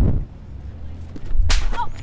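A single sudden sharp crack about one and a half seconds in. Before it, a low rumble fades out just after the start.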